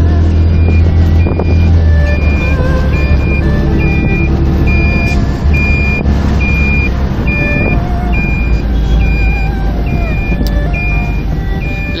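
Inside a moving car: a steady low rumble of engine and road, with music playing and a high beep repeating about twice a second.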